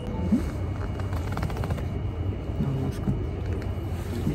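Steady low background hum with a few brief, soft voice sounds, one near the start and a couple more a little past the middle.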